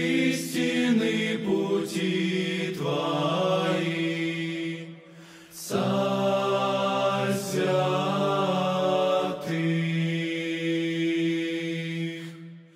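Male vocal ensemble singing a sacred hymn a cappella in held, chant-like chords, with a brief pause for breath about five seconds in.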